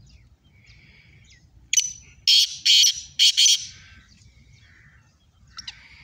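Black francolin (kala teetar) calling: a loud call of about five short notes, from about two seconds in to past three and a half, with fainter calls before it and again near the end.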